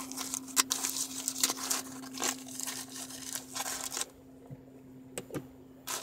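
Aluminium foil wrapper crinkling and crackling as hands unfold it from a taco, in quick irregular rustles for about four seconds, then dropping to a few small clicks near the end.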